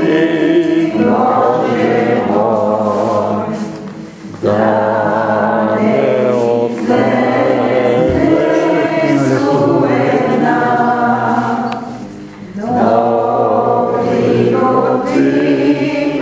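Church congregation singing a hymn together, the phrases broken by short breath pauses about four seconds in and again near twelve seconds.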